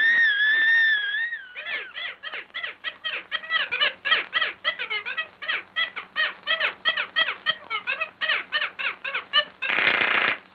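Cartoon squeak sound effects: a held, wavering squeal for about a second, then a fast run of short squeaks at about five a second, ending in a brief burst of noise.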